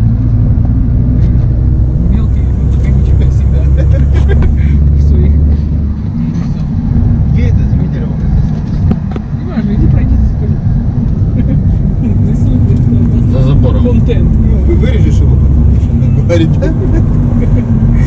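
Car driving along a gravel dirt track, heard from inside: steady loud low rumble of engine and tyres on loose stones, with scattered light clicks.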